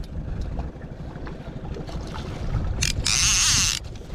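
Wind buffeting the microphone with water slapping against the jon boat's hull. About three seconds in comes a loud splashing rush, under a second long, as a landing net scoops a hooked splake out of the lake.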